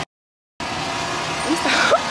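Half a second of dead silence at an edit cut, then steady outdoor background noise, with a young woman's short vocal exclamation near the end.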